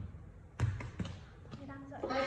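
Two dull thumps a little under half a second apart, with a voice starting faintly near the end.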